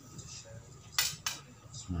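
Two sharp metallic clinks about a third of a second apart, a second in: steel knife blades knocking together as knives are handled.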